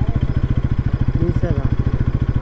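Motorcycle engine running at low, steady revs with an even, fast pulse as the bike rolls slowly along.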